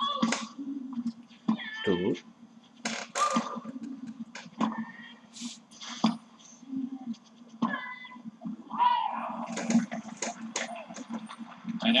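A tennis rally heard through a TV speaker: racket strikes on the ball about once a second, with the players' short, pitched grunts on their shots.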